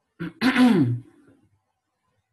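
A man clearing his throat: a brief catch, then a louder, longer rasp that falls in pitch, over within about a second.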